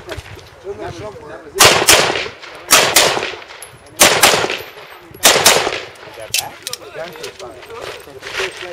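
Handgun fired in four quick pairs of shots, each pair about a second after the last, every shot ringing out briefly. Two fainter cracks follow a second later.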